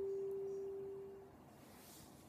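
The last sustained note of an iPad Polychord synthesizer: a single pure tone that dies away about a second in, leaving only faint noise.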